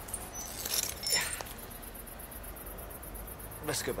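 Quiet spoken passage with no music playing: a brief voice about a second in, low steady background hiss, then a voice saying "let's go" near the end.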